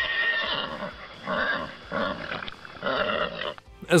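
A horse whinnying, a longer call and then several shorter ones, over background music.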